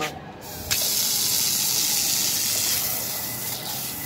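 Outdoor hand-held shower head turned on about a second in, then spraying water in a steady hiss onto bare feet and the tiled floor.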